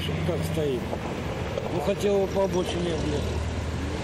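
A man talking in Russian over a steady low rumble of passing road traffic.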